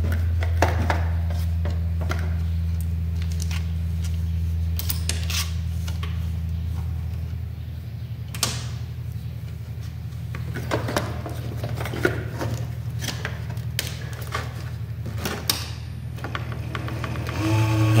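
A low steady hum from a computer power supply that fades away over the first several seconds, with scattered small clicks and taps as its bare output wires are handled and touched together.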